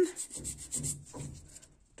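Hand nail file rasping across an artificial fingernail in quick back-and-forth strokes, about ten a second, stopping after about a second.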